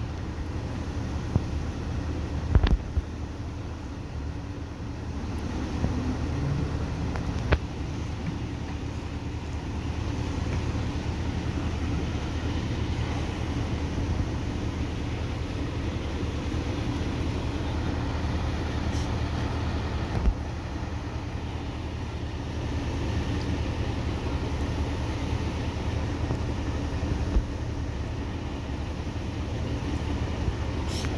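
Steady low rumble of idling vehicle engines and road traffic, with a few sharp clicks scattered through it.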